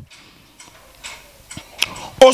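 A few faint, sharp clicks over a low hiss.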